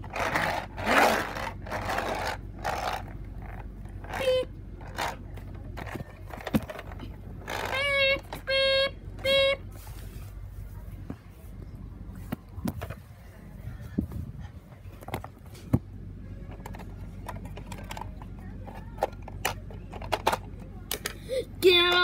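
Plastic toys being handled and pushed across a tiled floor, with scattered clicks, knocks and scrapes. About eight seconds in there are three short held tones from a voice.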